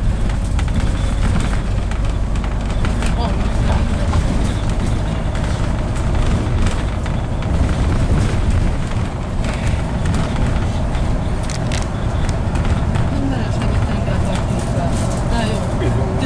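Bus interior while the bus drives along: a steady low engine and road rumble with a faint steady whine and scattered rattles of fittings.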